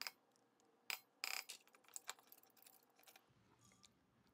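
Faint, scattered metal clicks and a brief scrape from a hand-cranked food mill being handled over a metal bowl, with one sharper click about a second in.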